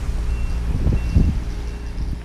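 A reversing vehicle's backup beeper sounding faintly: short, even high beeps about two-thirds of a second apart, three in all, over a steady low rumble of traffic and wind.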